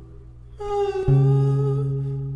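Song with a long held, hummed or sung vocal note coming in about half a second in, joined by a low bass note about a second in.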